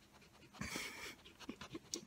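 A Great Pyrenees panting and breathing right at the microphone, with one long breathy burst about half a second in and a few short soft sounds near the end.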